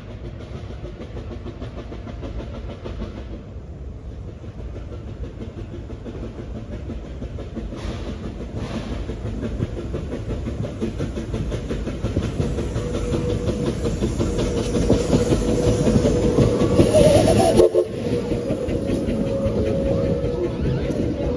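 4-4-0 steam locomotive approaching and passing with its train of open passenger cars. The running noise of the engine and wheels on the rails grows steadily louder and is loudest just before the engine goes by, about three-quarters of the way through. A steady note sounds over the last several seconds.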